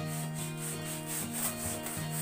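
Hand balloon pump inflating a foil balloon, quick regular airy strokes about four a second, over background music with held notes.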